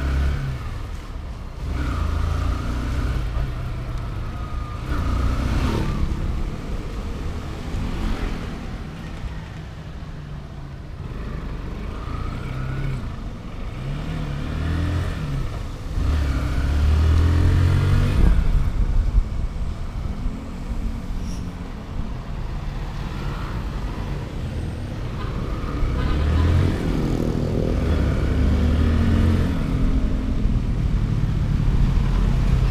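Motorcycle engine heard from on the bike while riding, rising in pitch as it accelerates and dropping back with gear changes or throttle-off, several times over, with steady wind and tyre noise on a wet road.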